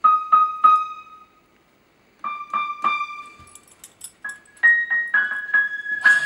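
Electronic keyboard playing single piano-voice notes, each sounding briefly and dying away: three at one pitch, a pause of about a second, three more at the same pitch, then a few higher notes, the last one struck three times.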